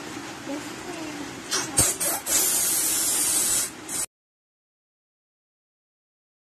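Gas hissing through a filling nozzle into a toy balloon: a click, then a loud steady high hiss for over a second, and a short second burst before the sound cuts off abruptly.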